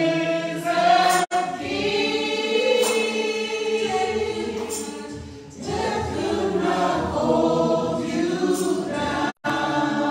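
A church worship team singing a gospel song in harmony, with long held notes. The sound drops out for an instant twice, about a second in and near the end.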